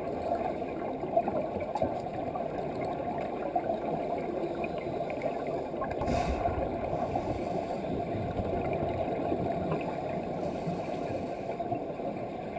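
Underwater bubbling from a scuba diver exhaling gently with the regulator out of his mouth, a steady rush of rising bubbles, with a louder surge about six seconds in.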